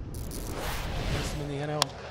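A transition whoosh, a broad noise sweep that fades into ballpark crowd noise. Near the end, one sharp crack of a bat hitting a pitched ball, just after a short held voice-like tone.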